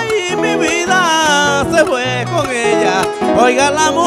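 A man sings décima in long, wavering lines that bend in pitch, accompanied by acoustic guitars.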